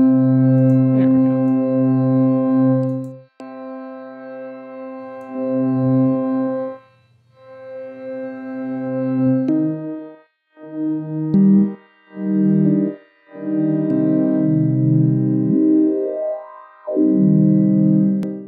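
A low, dark sampled organ patch from The Foundry sample instrument in Kontakt, played as held keyboard notes of about three seconds each, then shorter notes with short gaps from about ten seconds in. A faint rising tone sweeps up near the end.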